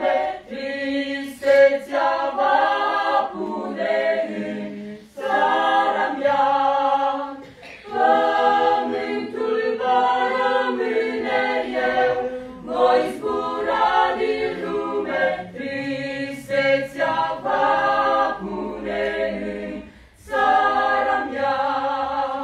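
Mixed church choir of men and women singing a cappella, in sung phrases of a few seconds with short breaths between them.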